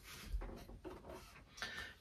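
Quiet room with a few faint, soft handling sounds: a hand pressing flat on paper and sliding across a cutting mat.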